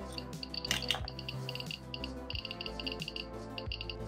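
Geiger counter kit's buzzer beeping rapidly and irregularly, short high-pitched beeps coming in quick random clusters, as uraninite ore is held against its Geiger–Müller tube: a high count from the ore's radiation. Background music plays underneath.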